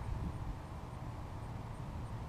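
Wind buffeting the microphone outdoors: a steady, uneven low rumble with no clear motor tone.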